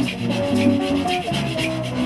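Live band playing an instrumental passage with an electric bass line, strummed ukulele and hand drums, and a shaker keeping a steady beat of about four strokes a second.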